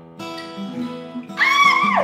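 Acoustic guitar picking through a ringing chord from just after the start. In the last half second a high-pitched squeal of delight cuts across it and falls away at the end.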